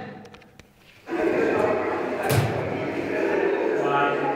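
A recorded song with vocals starts playing through a speaker about a second in and carries on at an even level. A single thump sounds about halfway through.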